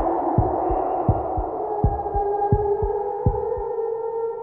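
Soundtrack of low heartbeat-like double thumps, about 80 pairs a minute, under a hissy ambient pad. Held tones swell in during the second half and the beats stop near the end.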